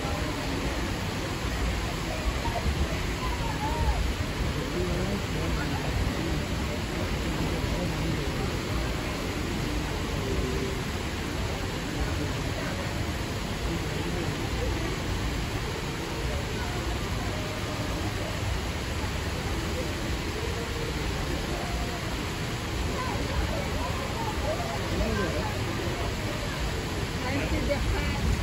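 Steady rush of water cascading down artificial rock waterfalls into a pool, with a crowd's chatter in the background.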